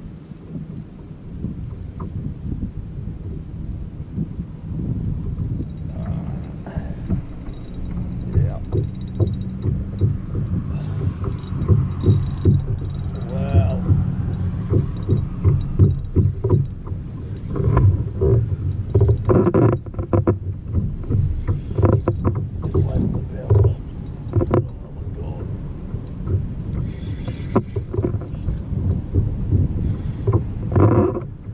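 Sounds of a kayak on the water: a steady low rumble with irregular clicks and knocks from handling fishing gear aboard, busiest in the second half.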